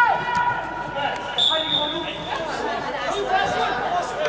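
A loud shout right at the start and scattered players' voices echoing in a large sports hall, with one steady, high referee's whistle blast of just under a second about one and a half seconds in.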